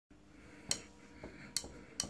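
Three faint, sharp clicks, spaced under a second apart, from hands touching an electric guitar's strings while getting ready to play, over a faint steady hum.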